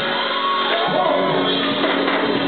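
Gospel choir singing live over music, with shouts of praise rising above the voices.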